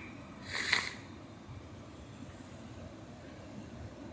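Steady, faint wash of ocean surf and wind. About half a second in comes one short breathy puff close to the microphone.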